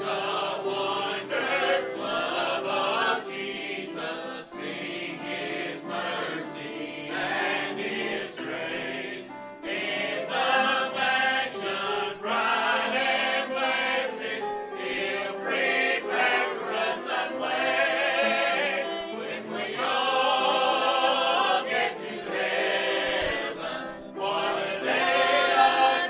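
Church choir singing, men's and women's voices together.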